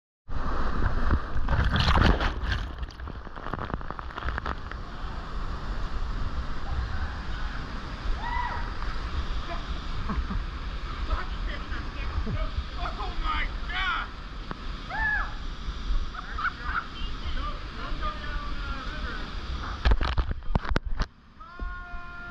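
Rushing whitewater as a kayak plunges over a waterfall: heavy splashing in the first couple of seconds as the boat drops into the foam, then steady churning river noise, with another loud burst of splashing near the end.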